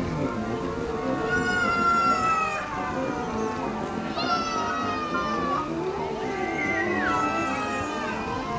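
Outdoor military band music heard from a distance, with three long, high notes that stand out above it, each sliding slowly downward in pitch; the last one drops more steeply near the end.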